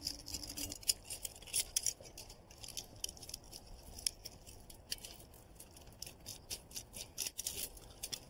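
A blade cutting and scraping through the silicone sealant that holds a metal chimney cap down: a run of short, irregular scraping strokes.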